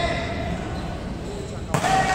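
Players calling out during an indoor volleyball rally, with one sharp smack of the volleyball near the end, followed at once by louder shouts.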